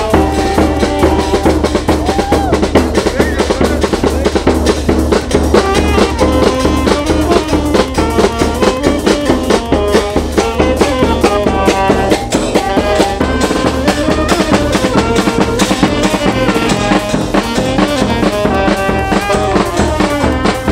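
A small street band plays an upbeat tune, with saxophones carrying the melody over a steady bass-drum and snare beat.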